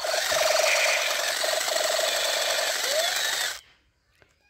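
Battery-operated toy machine gun's electronic firing sound effect with the trigger held: a fast buzzing rattle over a wavering tone, cutting off suddenly near the end.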